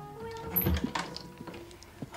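The last held note of soft background music fades out, followed about half a second in by a few soft knocks and one low thump, the sounds of movement in a small room.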